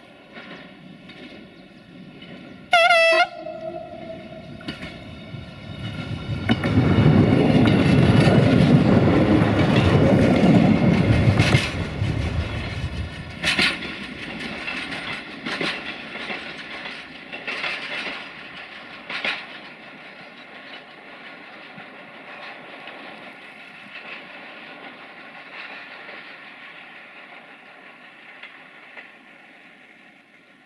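An Interregional Călători Duewag BR628 diesel multiple unit gives one short horn blast about three seconds in. It then passes close with its diesel engine running, at its loudest from about 6 to 12 seconds in, with several sharp wheel clicks over rail joints, and fades as it moves away.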